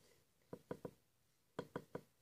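Faint soft taps from fingers squeezing and handling a foam bread squishy, in two quick groups of three.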